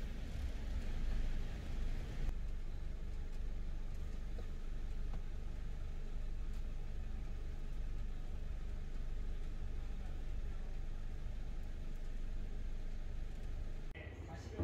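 A car's engine running, heard from inside the cabin as a low, steady rumble.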